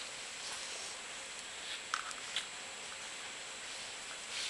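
Faint handling of a wire and its connector by hand, with two light clicks about two seconds in, over a steady room hiss.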